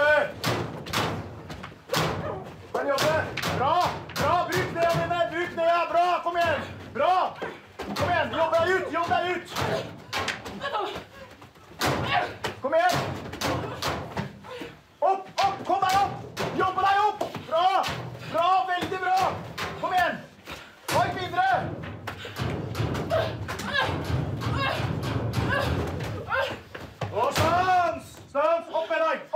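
Close-quarters sparring: repeated irregular thuds and slams of blows and bodies against a wall, mixed with wordless shouts and strained grunts of effort throughout.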